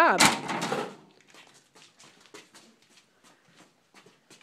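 A brief loud rustle of crinkly plastic tape being handled, lasting about a second, followed by faint scattered ticks and scuffs.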